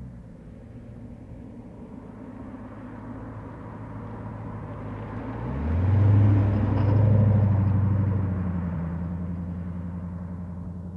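1991 Corvette convertible's V8 engine as the car drives past: a low engine note that grows louder and rises in pitch about five and a half seconds in, is loudest as the car passes, then fades as it pulls away.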